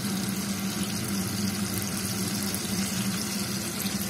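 Lamprey pieces frying in oil in a pan, with a steady sizzle and a steady low hum under it.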